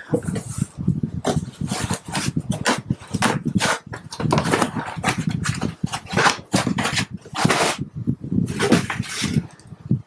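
Black packing-foam inserts rubbing and scraping against each other and against the cardboard box as they are pulled loose by hand, in a rapid string of short scrapes.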